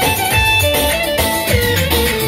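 Loud dance music: a melody stepping between held notes over a steady, pulsing bass beat.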